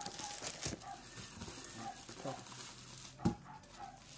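Plastic bubble-wrap packaging rustling and crinkling as a parcel is handled and lifted out of a cardboard box, with a single sharp thump about three seconds in.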